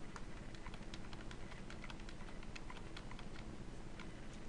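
Faint, irregular clicking from a computer mouse and keyboard, several clicks a second, as a CAD drawing is zoomed and panned, over a low steady hiss.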